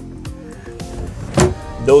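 Background music over a tempered-glass cockpit enclosure panel being slid shut and latched, with one short clack about one and a half seconds in.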